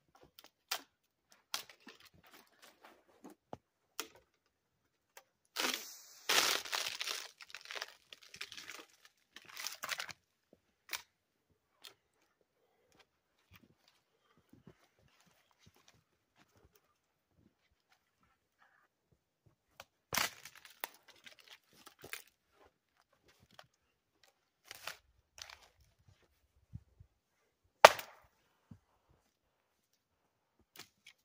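Dry dead cedar branches snapped off a tree by hand: scattered twig clicks, a stretch of crackling and snapping about six to ten seconds in, another snap about twenty seconds in, and one sharp, loud crack near the end.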